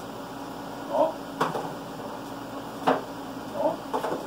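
Two sharp knocks of kitchenware being handled at a counter, about a second and a half apart, over a steady low hum.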